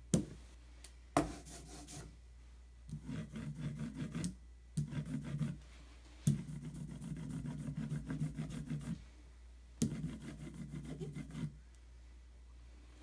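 Hand ink brayer rolled back and forth over an inked woodcut relief block, a rubbing, faintly crackling sound as the roller spreads the ink. It comes in about five passes of one to three seconds, most of them starting with a sharp knock as the roller comes down on the block.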